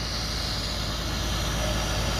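Diesel engine of a bitumen sealing tanker truck idling steadily.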